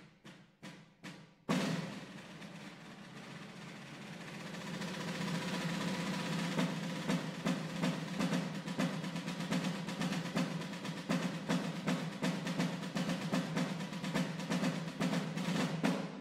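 Rope-tension field drum played with wooden sticks: a few separate strokes, then about a second and a half in a loud stroke launches a dense roll that swells over the next few seconds and carries regular accents. It stops sharply at the end.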